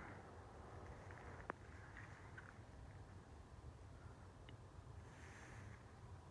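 Near silence: faint outdoor night ambience with a low rumble, broken by a single click about one and a half seconds in.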